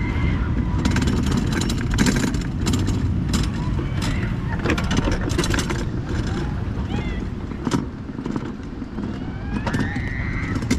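Wiegand summer bobsled running down its metal trough: a steady low rumble of the wheels with frequent rattling clicks and knocks. A few short, high, sliding squeals come near the start, about seven seconds in, and near the end.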